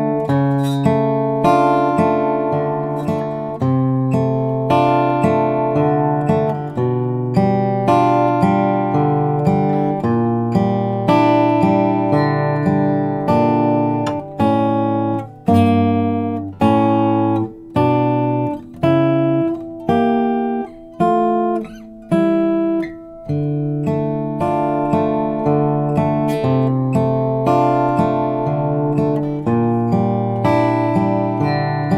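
Acoustic guitar fingerpicked slowly, an even pattern of bass notes and picked upper strings letting chords ring. In the middle stretch the notes are cut off with short gaps between them.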